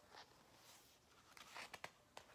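Near silence, with faint rustling and a few soft clicks as the pages of a picture book are turned.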